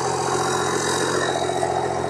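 Pickup truck engine idling steadily.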